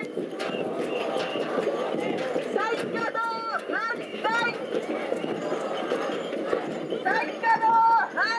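A street drum group playing bass and snare drums in a steady rhythm, with high voices calling out over it in short rising-and-falling cries, louder near the end.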